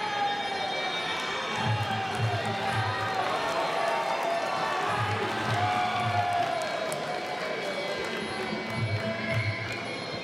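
Traditional Muay Thai sarama music: a wavering, gliding Thai oboe melody over drum beats that come in short groups every few seconds, with crowd noise behind it.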